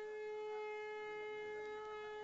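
A single horn-like tone held at one steady pitch, without a break, over a faint murmur of voices.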